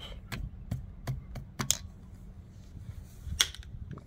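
Lee hand press with a bullet sizing die being worked to size a copper muzzleloader bullet in two passes: a run of short, sharp metallic clicks and clacks at uneven spacing, the loudest near the end.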